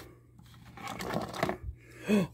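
Cardboard box flaps being pulled open by hand: a soft scraping rustle that builds about a second in, with a few light ticks and a dull knock near the end.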